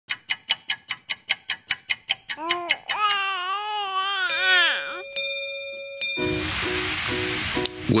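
Produced intro sound effects over a title card: a fast even run of clicks, about five a second, then warbling electronic tones that bend up and down, a bell-like ringing tone, and a hissing wash to finish.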